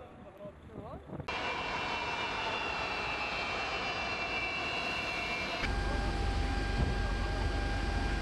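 Large cargo jet's engines running with a steady whine, starting suddenly about a second in. Past the middle the sound changes to a louder, deeper rumble with a steady hum.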